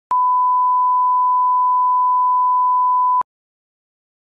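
A 1 kHz line-up test tone, the steady pure beep that goes with broadcast colour bars as a level reference, held for about three seconds and then cut off sharply.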